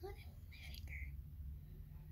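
A girl's faint whispered speech in the first second, then a low steady room hum.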